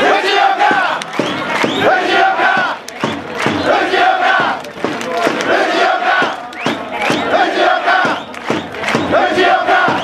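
Baseball fans' crowd chanting and shouting together in short, repeated phrases, a brief dip between each.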